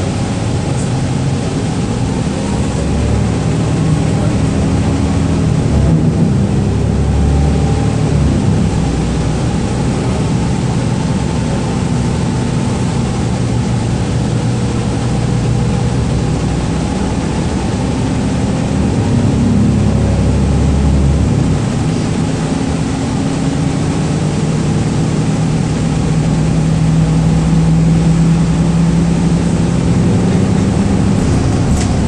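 Cabin noise inside a 2012 Gillig Low Floor transit bus under way: a steady engine drone over road and tyre noise. The engine note climbs and swells a few times as the bus picks up speed.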